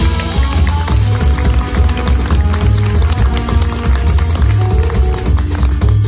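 Live jazz big band playing: saxophones, trumpets and trombones over piano, double bass and drum kit, loud and steady.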